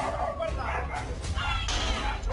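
Men shouting to have a door opened, with a dog barking among the shouts.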